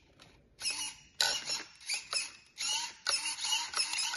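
Steering servo of a Traxxas Rustler 4x4 RC truck whirring in about six short bursts as it swings the front wheels back and forth during a steering test.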